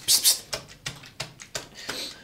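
A cabbage in its packaging being squeezed and handled: a quick run of sharp crackling clicks, with a short rustle near the start.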